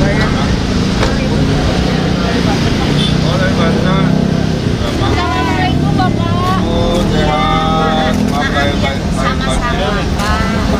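Steady road traffic noise, with vehicle engines running as cars and buses pass along the road. People's voices talk over it from about three seconds in.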